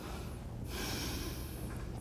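A person's audible breath: a short hiss lasting about a second, over a faint low room hum.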